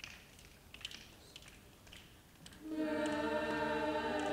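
School choir singing: after a short quiet rest, the choir comes in on a loud, held chord about three seconds in.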